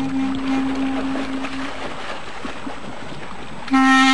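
Instrumental music: a held note fades out before halfway, leaving a steady rushing noise. A clarinet melody comes in just before the end.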